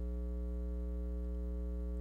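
Steady electrical mains hum: a low drone with a ladder of fainter higher overtones.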